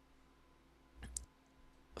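Near silence between speech, with one faint short click a little over a second in.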